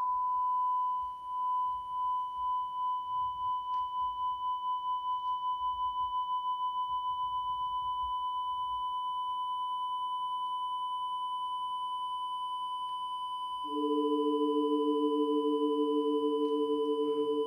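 Electronic pure-tone score: a single high, steady sine tone switches on suddenly, with a faint higher tone above it. Its loudness wavers at first, the wavers quickening and evening out. Near the end, two lower steady tones join and make it louder.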